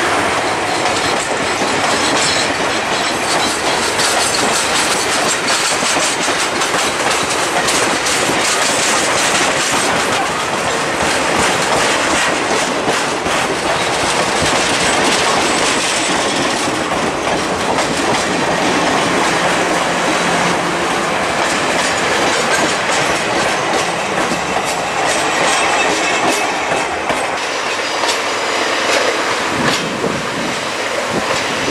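Passenger coaches of a train rolling past close by: steel wheels clicking over the rail joints amid the steady noise of wheels on track.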